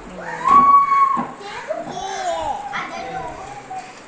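A toddler's voice: one long, high held call about half a second in, the loudest part, followed by babbling sounds that rise and fall in pitch.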